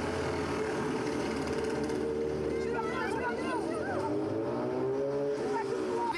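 A motor vehicle engine running close by, its pitch slowly rising and falling, with voices in the background.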